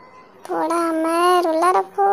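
A young child's voice singing out one long held note for more than a second, then starting a second, shorter note right at the end.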